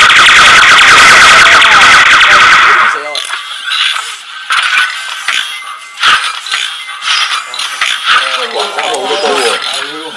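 Robosen Optimus Prime robot playing a loud burst of battle sound effects and music through its built-in speaker for about three seconds, then quieter effects mixed with the clicks and whir of its servos as it swings its sword and gun arms.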